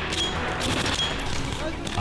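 Rapid, overlapping small-arms and machine-gun fire from several weapons firing blanks, a sustained volley in a training firefight.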